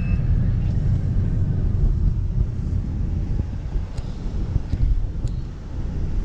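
Low, steady rumble of road and engine noise inside the cabin of a moving car.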